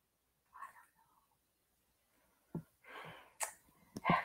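Very quiet room with a person's faint breaths and a soft whispered sound about three seconds in, with a couple of small mouth or pen clicks around it.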